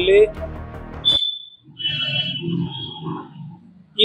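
A man's speech over a background music bed; the music cuts off abruptly about a second in. After it, a short, high, whistle-like tone and faint muffled sounds follow.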